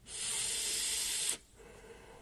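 One airy hiss of about a second and a quarter from a puff on a Uwell Crown sub-ohm vape tank running at 80 watts, ending abruptly.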